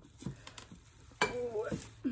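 Loose glass beads rattling and clinking inside a heavy cut-crystal vase as it is picked up and handled, with a few light clicks and then a sharper clink a little over a second in.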